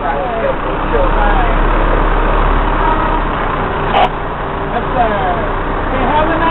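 Steady low engine hum of a fire rescue truck heard from inside its cab while it rolls slowly, with untranscribed voices over it and a short sharp knock about four seconds in.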